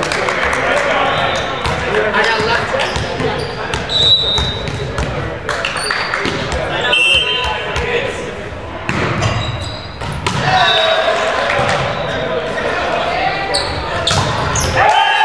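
Volleyball players' voices calling out in a reverberant gymnasium, mixed with sharp thuds of the ball being bounced and struck.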